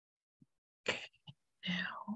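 A person's voice, quiet and without clear words: a short breathy sound about a second in, then a brief murmur near the end.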